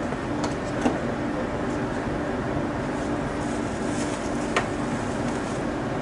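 A truck engine idling steadily, with a few sharp clicks from the cab door: two close together near the start and one more about four and a half seconds in.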